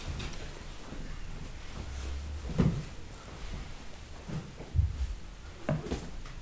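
A few soft dull knocks and shuffles of people shifting in wooden chairs and settling into meditation posture, one knock about two and a half seconds in, more near the end.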